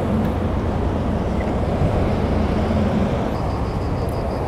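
Steady motorway traffic noise from heavy trucks and cars, with a low engine hum underneath.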